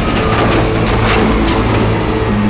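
Jet engine of a plane running at high power: a loud, steady rush of noise with a faint whine slowly falling in pitch.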